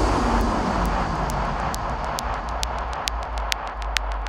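Psytrance breakdown: after a heavy hit, a swept noise effect falls in pitch and fades over a deep sub-bass rumble. A crisp hi-hat ticks about twice a second.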